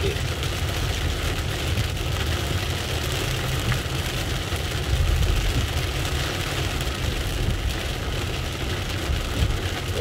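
Heavy rain from a downpour beating steadily on a car's roof and windshield, heard from inside the cab, over the low rumble of the car's engine and tyres on the wet road.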